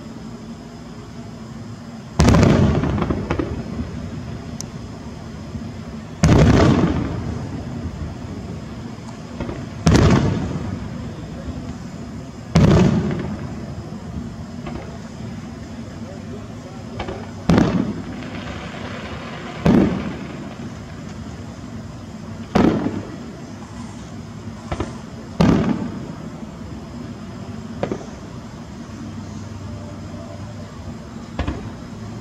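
Aerial fireworks shells bursting overhead: about eight loud booms a few seconds apart, each trailing off in a long rolling echo, with smaller pops and crackles in between.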